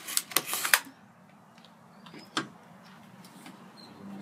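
Plastic packaging bag crinkling and rustling in a quick flurry as it is handled, then a single sharp click about two and a half seconds in.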